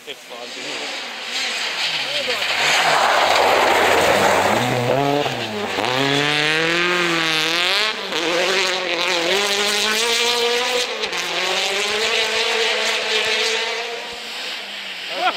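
Rally car driven flat out on a snowy forest stage: a rushing hiss of snow spray from the tyres builds, then the engine revs rise and fall repeatedly through gear changes.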